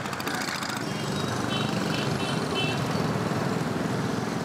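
Steady din of many small engines running together under the bustle of a crowd. A few faint, short high tones come through about halfway.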